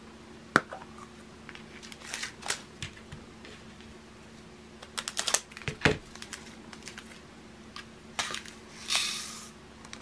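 Small plastic handling sounds: sharp clicks from a plastic drill storage pot and its flip lid, crinkling of small plastic bags of diamond-painting drills, and a brief rattling rush near the end as the drills pour into the pot.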